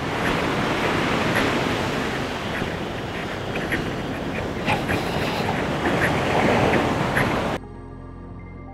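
Wind on the microphone and sea surf, a steady rushing noise, with a few faint ticks. Near the end it cuts off abruptly, leaving soft background music.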